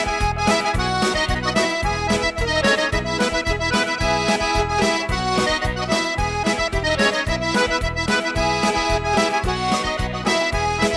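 An accordion playing a lively tune, with held melody notes over a quick, even beat in the bass.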